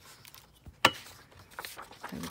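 Paper and a metal ruler being handled on a craft table: faint rustling of paper, with one sharp click a little under a second in.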